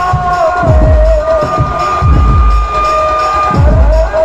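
Benjo band playing live: a lead melody with a long held high note in the middle, over heavy bass drum beats, loud.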